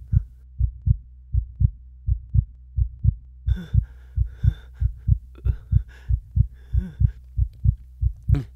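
Heartbeat sound effect: paired low thumps in a steady lub-dub, about one beat every three quarters of a second. A faint airy sound comes and goes in the middle of it.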